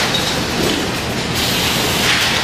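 Loud, steady factory-floor noise of machinery running, with the clatter of steel ball-bearing slide rails being handled.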